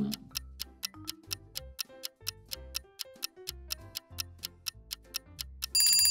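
Clock-ticking sound effect for a quiz countdown timer: a steady run of sharp ticks over soft background music, marking the time given to answer. Just at the end a ringing bell-like tone begins, signalling that time is up.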